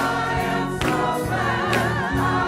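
Gospel choir singing with full voices and vibrato over low sustained notes, with a sharp beat about once a second.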